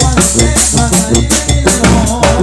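Tamborazo band playing: fast, even strokes on the tarola snare drums and cymbal, about six a second, over a steady low bass, with horn lines above.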